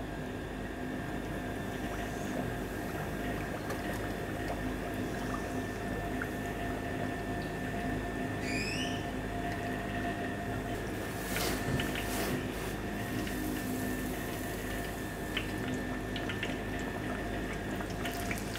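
Breaded chicken breast shallow-frying in hot oil in a wok: a steady sizzle over a constant background hum.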